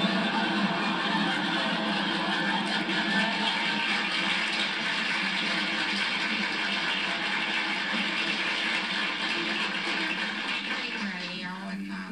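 Audience laughter and applause, holding at a steady level and dying down just before the end.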